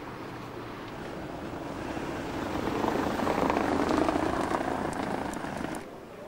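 A passing vehicle: a rushing engine noise that swells to its loudest about four seconds in, eases off, and cuts off suddenly near the end.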